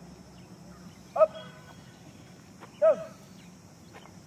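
Two short shouted push-up commands ('up', then 'down') from a drill instructor calling the pace, one about a second in and one near the end, over a low steady outdoor background.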